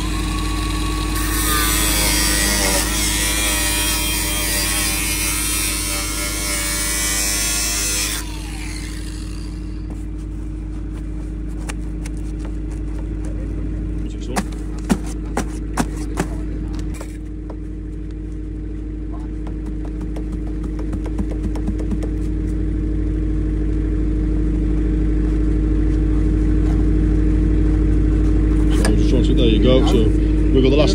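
Angle grinder cutting through a pipe: a loud, hissing grind starts about a second in, runs for about seven seconds, then stops. A steady low hum continues underneath throughout, with a few sharp clicks midway.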